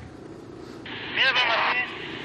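A voice comes over a handheld two-way radio for about a second, starting a little under a second in, sounding thin and hissy with an abrupt start and stop.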